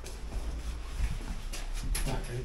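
Footsteps and clothing rustle over a low rumble of the moving handheld camera, with a few short scuffs near the end, as people step into an elevator car.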